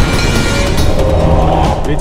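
Dramatic background score with a loud rushing, rumbling sound effect laid over it, steady with a deep low end and a few faint held tones.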